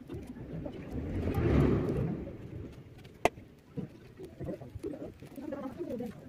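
Fingers peeling an orange by hand, the peel tearing and clicking softly, while a bird coos in the background. A short rush of noise swells and fades about a second in, and a single sharp click comes a little after three seconds.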